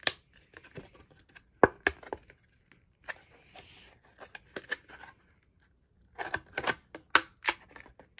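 Thin cut acrylic sheet bent by hand to pop knife-cut heart blanks out of it: irregular sharp clicks and snaps of the plastic, with crinkling and tearing of its protective plastic film. The loudest snap comes about a second and a half in, and a quick run of clicks comes near the end.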